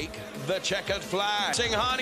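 A voice speaking, with background music underneath.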